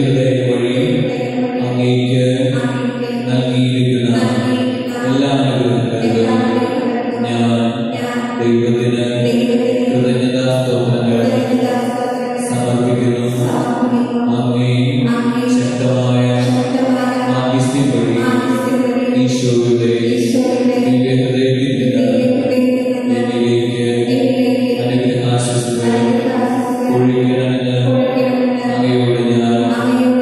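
A devotional hymn sung slowly in a chant-like melody over steady, sustained accompaniment notes.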